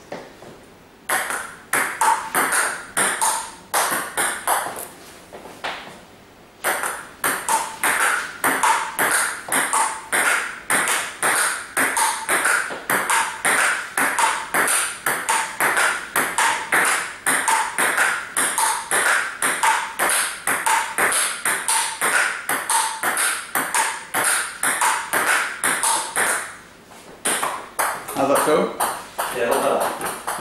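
Table tennis rally: a plastic ball clicking back and forth off two rubber-faced bats and bouncing on the table in an even, brisk rhythm, about three to four clicks a second. The rally breaks off briefly about five seconds in and again near the end.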